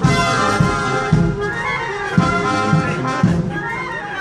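Military brass band playing a march, brass chords over a bass drum beating about twice a second in marching time. The band strikes up loudly right at the start.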